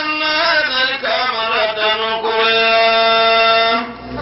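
A single voice chanting in long, ornamented held notes. The second half is one long sustained note that cuts off shortly before the end.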